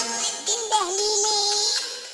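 Music with a synthetic-sounding, pitch-shifted singing voice that holds one long note, fading out near the end.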